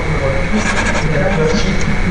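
Several people talking over one another in a hall, a general murmur of voices with no single clear speaker, over a steady electrical hum.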